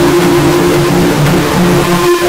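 Logo soundtrack put through a 'G Major' audio effect, heard as a loud, harsh, distorted buzz. A steady drone holds over a lower tone that wavers up and down.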